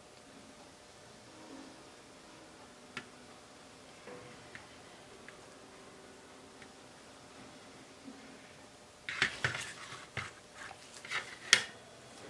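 Faint handling ticks, then about nine seconds in a flurry of sharp clicks, crinkles and knocks from a disposable aluminium foil pan as a wet, paint-covered canvas is set down onto it, ending with one sharper knock.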